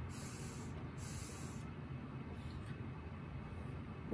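Water bubbling in a glass bubbler during one long inhale through a Yocan Rex electric dab rig, with a hiss that comes and goes over the first second and a half.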